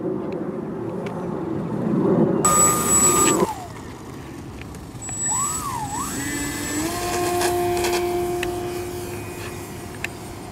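A low buzz that cuts off abruptly a few seconds in. Then the electric motor and propeller of a Dynam J-3 Cub RC model plane whine, rising in pitch as the throttle is opened for the takeoff run and holding steady at the higher pitch through the climb-out.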